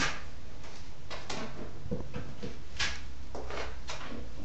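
Metal drywall taping knife spreading joint compound into an inside corner: a series of short scraping strokes of the blade, over a steady low hum.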